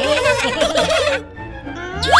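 A rapid, gobble-like warbling cartoon sound for about a second over light background music, then dropping away.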